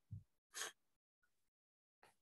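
Near silence broken by a soft low thump at the microphone, then a short breathy rush about half a second in, a breath taken at the podium microphone just before speaking.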